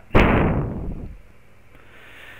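A sudden rush of noise on a headset microphone, fading away over about a second, followed by quiet room tone.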